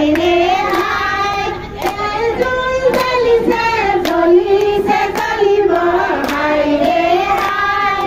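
Women singing a song together, with hand-clapping keeping time roughly once a second.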